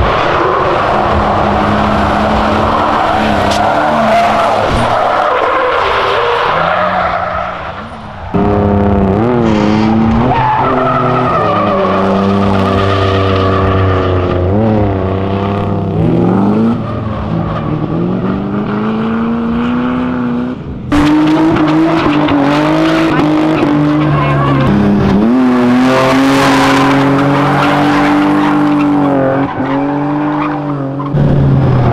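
Cars drifting: engines held at high revs, rising and falling with the throttle, over tyres squealing and skidding. The sound changes abruptly a few times as one car's run gives way to another's.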